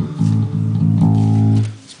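Music Man StingRay electric bass played through an Ampeg SVT amp and 8x10 cabinet: a short run of about five plucked notes, each ringing into the next, that stops just before the end.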